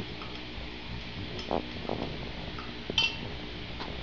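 A wooden stirring stick knocking and clinking against the side of a drinking glass holding freshly mixed lye solution: a few light taps, the sharpest clink about three seconds in.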